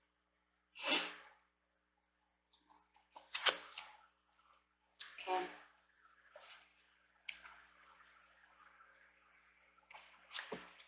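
Several short, breathy bursts from a person, the loudest about a second in, with two smaller ones a few seconds later and faint rustling after.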